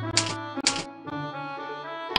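Instrumental background music with two short typewriter-key sound effects about half a second apart in the first second, louder than the music.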